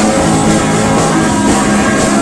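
Live rock band playing loud: drum kit and electric guitar, recorded from within the crowd.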